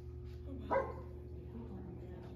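A dog barks once, a single short bark about three-quarters of a second in, over a steady low hum.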